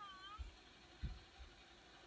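A short high-pitched vocal call that dips and rises, then two dull low thumps, the second and louder one about a second in.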